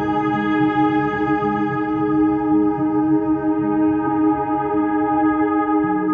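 Slow ambient relaxation music of long held chords, with a low note changing about four seconds in.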